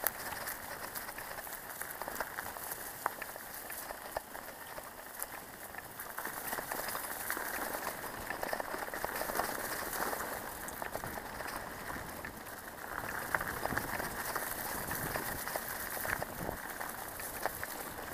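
Mountain bike tyres rolling over a dirt trail strewn with dry leaves: a steady crackling rush dotted with many small clicks and rattles.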